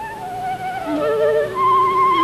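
Concert flute playing a melody with vibrato: a run of notes falling in pitch, then a leap up to a long held note near the end.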